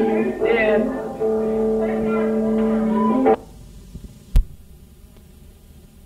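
Amateur rock band on an old VHS recording, ending on a long held guitar chord, then the sound cuts off abruptly a little over three seconds in. A single sharp click follows about a second later, then only faint tape hiss and hum.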